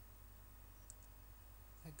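Near silence: a low steady hum, with one faint short click about a second in.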